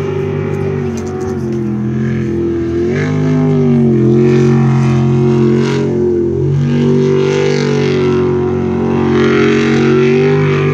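Jet sprint boat engine running hard, its pitch dipping and rising as the throttle is worked through the turns, with marked shifts about three and six and a half seconds in.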